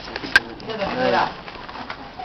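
A person laughs briefly, with a wavering voice, about a second in, just after a single sharp click.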